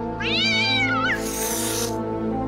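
A cartoon cat meows once, a drawn-out call that rises and then falls, followed by a short hiss, over sustained background music.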